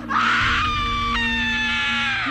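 A child screaming: one long, high-pitched scream that drops a step in pitch about a second in, over a low rumble of film score.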